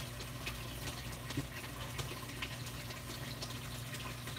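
Water trickling and bubbling in a reef aquarium sump, with small faint splashes, over the steady low hum of the protein skimmer's pump.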